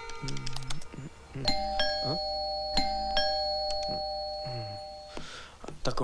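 Background film music with short sliding notes, then a bell-like chime struck about a second and a half in. The chime rings steadily for several seconds, with a couple more strikes partway through.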